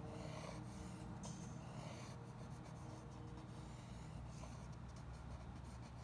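Graphite pencil scratching faintly across drawing paper as lines are sketched, with a steady low hum underneath.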